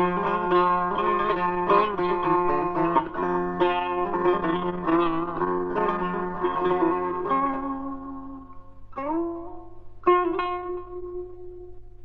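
Solo plucked string instrument playing Persian classical music in the Bayat-e Esfahan mode: a run of quick notes with some pitch bends thins out in the last few seconds to two single notes, each left to ring.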